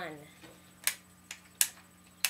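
Three sharp plastic clicks from a plastic spring airsoft machine pistol being worked in the hands, the last the loudest.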